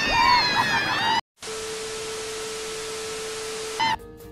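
Roller coaster riders screaming, high cries sliding down in pitch, cut off abruptly about a second in. Then a steady hiss with a single held low tone.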